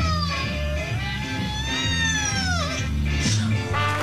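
A cat meowing over swing music: a short falling meow ending just after the start, then one long drawn-out meow that rises and then falls away, ending about two and a half seconds in.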